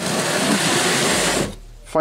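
Plastic oil drain pan dragged across a concrete floor: a steady scraping hiss lasting about a second and a half that stops abruptly.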